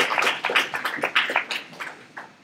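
A person laughing: a run of short, breathy pulses about five a second that die away near the end.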